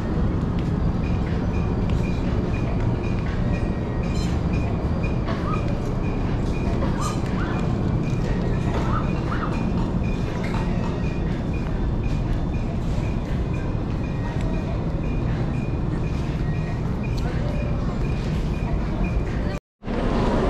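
Clothing-store ambience while walking: a steady low rumble with faint background music and distant voices, and a faint high tone pulsing about three times a second. It cuts off abruptly just before the end.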